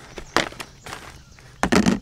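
Plastic storage bin being opened and rummaged through: sharp plastic knocks, one about a third of a second in, and a louder clatter and rustle of plastic bait packets near the end.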